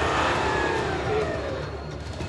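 Toyota Land Cruiser 300's engine revving under load as it pushes through deep snow, its pitch falling away over the two seconds.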